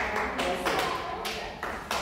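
A few sharp taps, about four spread over two seconds, on a hard floor in a large hall, with faint murmuring voices underneath.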